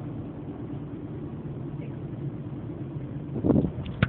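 Steady low rumble of a car's engine and tyres heard from inside the cabin while driving. Near the end comes a short, louder rustle as the phone is picked up and handled.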